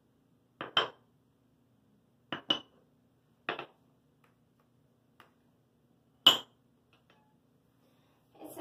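Small cups and containers knocked and set down on a table: a few short clinks with a slight ring, two quick pairs in the first three seconds, another at about three and a half seconds, and the sharpest one about six seconds in.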